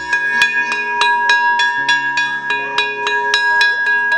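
A hanging metal plate used as a school bell, beaten rapidly with a stick at about five strikes a second. It keeps up a steady bright ringing.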